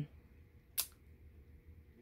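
A single short click a little under a second in, against faint room tone.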